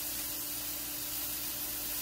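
Steady sizzle of bacon rashers, sausages, mushrooms and tomatoes searing together in a hot grill pan, with a faint steady hum underneath.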